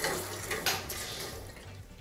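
Water rushing and hissing through a just-opened valve into newly soldered copper heating pipes as the line fills, a hiss that starts sharply and fades over about a second and a half. The line is being filled to check the fresh joints for leaks.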